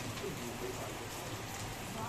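A steady, even hiss with faint murmuring voices underneath.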